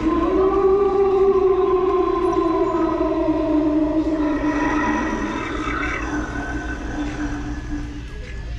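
Animated hanging ghost prop playing one long, drawn-out ghostly moan that slowly sinks in pitch.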